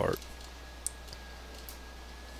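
A few sharp computer mouse clicks, the loudest a little under a second in, over a steady low electrical hum and a faint high whine.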